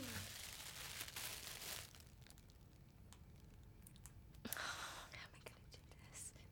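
Faint rustling of satin fabric being handled and unwrapped, then a brief soft breathy sound about four and a half seconds in.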